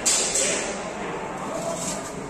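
People's voices in a billiard hall, starting with a sudden loud burst and trailing into a shorter call near the end.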